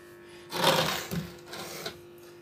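Rough rubbing, scraping noise from hands working the wooden speaker cabinet and its power switch. It starts about half a second in and fades over about a second, with a small click near the end and a faint steady hum underneath.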